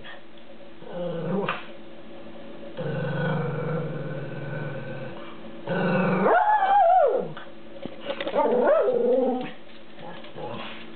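Miniature poodle vocalising to demand a treat: a low growl lasting a couple of seconds, then a loud drawn-out whining cry that rises and falls in pitch, and a shorter wavering whine near the end.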